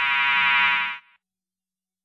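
Electronic security alarm sounder giving a continuous harsh buzzing tone, which cuts off abruptly about a second in.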